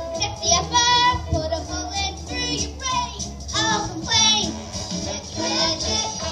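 A trio of children singing into hand-held microphones over musical accompaniment, with held, sliding sung notes.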